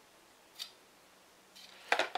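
Light handling sounds from a plastic 140 mm radiator fan and its cable: one soft click about half a second in, and a louder click near the end.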